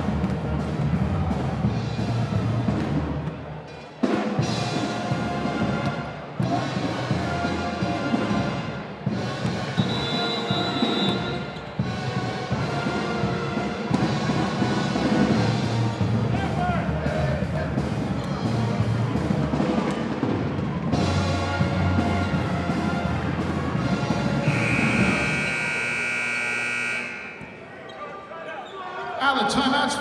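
Arena sound-system music with a heavy, steady beat. Near the end the music gives way to about two seconds of a steady, high electronic horn, the signal that ends the timeout, then a brief lull.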